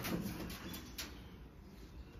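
Faint scuffs and two light clicks about a second apart as a green iguana is set back onto the wooden branches of its enclosure and grips them with its claws.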